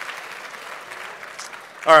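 Audience applause, an even patter that slowly tapers off, with a man's voice coming in just at the end.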